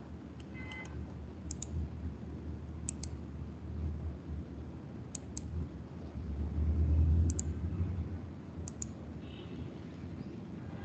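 Computer mouse clicking about five times, each click a quick pair of sharp ticks, over a low rumble that swells about seven seconds in.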